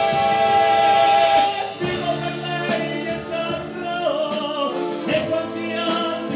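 Live singing over a band accompaniment: a long high note held for about the first second and a half, then the melody moving on over a steady beat with a regular cymbal tick.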